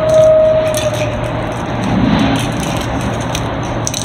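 A truck running in the background: a steady low rumble with a steady whine that fades out about a second and a half in. Small sharp clicks come from a spray paint can being handled and its cap worked open.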